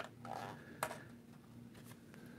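Faint handling of a hard plastic RC crawler body worked with needle-nose pliers while a mirror part is twisted straight, with one sharp click a little under a second in, over a low steady hum.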